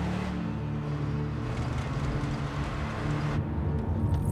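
A car driving along a road, a steady low rumble of engine and tyres, with faint sustained background music.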